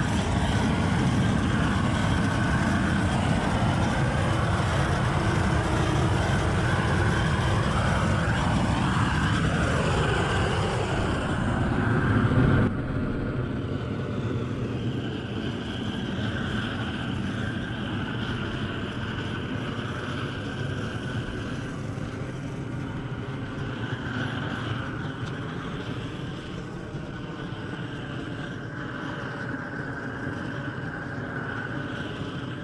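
Propane weed burner torch burning at the nozzle, a loud steady rushing. About twelve seconds in it drops suddenly to a quieter steady rush.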